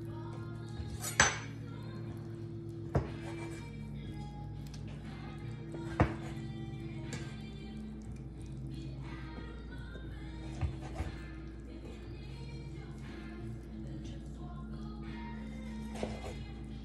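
A steel kitchen knife clinking against a glass baking dish and cutting board while sweet-roll dough is sliced and the pieces are set in the pan. There are three sharp clinks in the first six seconds and a couple of fainter ones later, over quiet background music.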